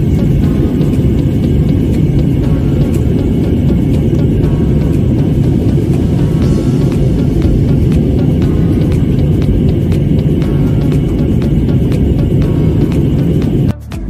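Steady low roar of a jet airliner's cabin in flight, the engines and airflow heard from a window seat, with background music faintly over it.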